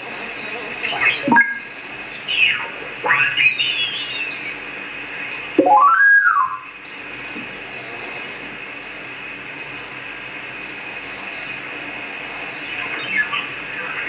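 Homebuilt QRP transceiver's receiver being tuned by hand across the 80 m band in LSB: whistling heterodyne tones glide up and down as the dial passes signals, the loudest a rising-then-falling whistle about six seconds in. Then steady band hiss, with more whistles sweeping past near the end.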